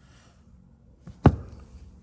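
A single sharp knock about a second in, over quiet room tone.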